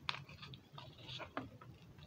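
Faint handling of a folded paper butterfly as it is opened: a few soft, scattered clicks and crinkles.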